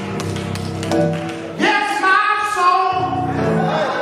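Live gospel music: sustained accompaniment chords, with a voice entering about a second and a half in and singing long held notes.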